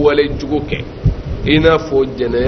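A man's voice close to a microphone, speaking in drawn-out phrases: one trails off just after the start and another begins about a second and a half in. A low thud falls in the pause between them.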